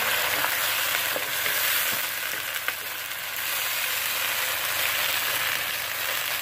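Onions and tomatoes sizzling in hot oil in a non-stick kadhai as a wooden spoon stirs them, with a few light taps of the spoon. A splash of water goes into the hot oil at the start, and the sizzle is loudest then before easing.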